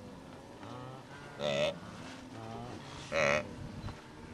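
A large herd of wildebeest calling over one another in a dense chorus, with two louder calls about a second and a half and three seconds in.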